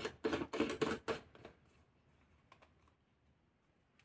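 A quick run of small plastic clicks and knocks in the first second and a half as a portable blender bottle is handled by its cap.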